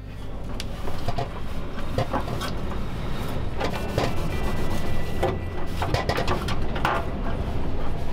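A cloth rag wiping and scrubbing a stainless-steel stovetop, heard as a series of short, irregular rubbing strokes over a steady low rumble.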